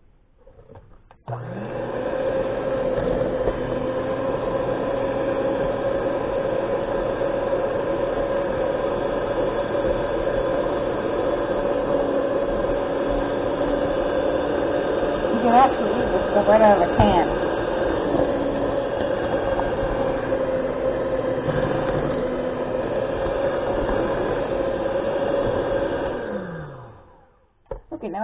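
Electric mixer running steadily at one speed, its beaters working eggs into cookie dough; it starts about a second in and winds down near the end.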